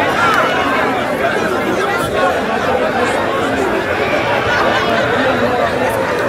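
Many people talking at once: a steady crowd chatter of overlapping voices, with no single voice standing out.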